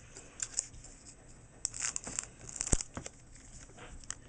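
Foil Pokémon booster pack wrapper crinkling in the hand and being torn open, in short scattered crackles, with one sharp click near the three-second mark.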